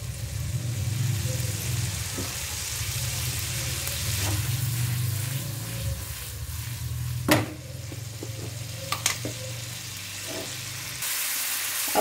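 Paneer cubes, ginger and green chilli sizzling in butter in a pan on a high flame as they are tossed. One sharp knock about seven seconds in and a couple of lighter clicks around nine seconds.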